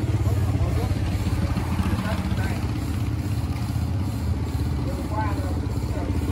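A motorbike engine idling steadily close by, an even low rumble that does not change.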